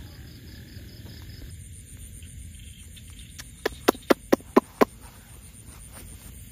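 Night insects chirping steadily, with a run of six loud, sharp animal calls in quick succession, about four a second, near the middle.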